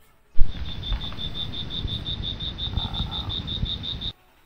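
Edited-in night-chorus sound effect: a high chirp repeating about six times a second over a rumbling hiss. It cuts in abruptly with a loud thump-like onset and cuts off just as abruptly.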